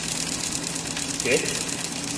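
Steady mechanical hum with a fine, even rapid ticking in the highs, unchanging throughout.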